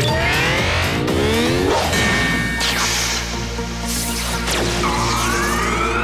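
Electronic cartoon soundtrack music under sound effects: rising swooshes in the first two seconds and again near the end, with a few sharp hits in between.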